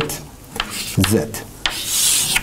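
Chalk scratching on a blackboard in a few short strokes as symbols are written.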